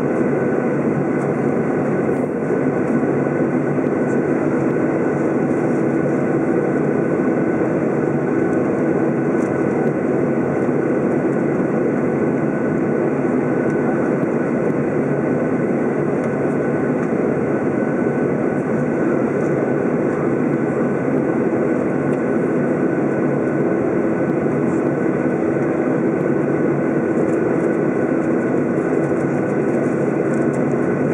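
Inside the cabin of a Boeing 737-800, its CFM56-7B turbofan engines running at taxi power: a steady rumble with a few steady high tones over it.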